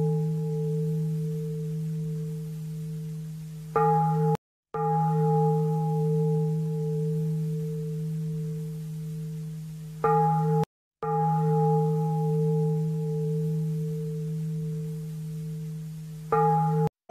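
A deep bell struck about every six seconds, each stroke ringing on and slowly fading. Just before each new stroke, a short burst of ringing cuts off suddenly.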